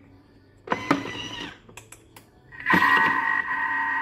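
Thermomix TM6 being set going: a short motorised whirr and a few clicks, then its mixing motor starts at speed 2.5 and runs steadily with a level whine.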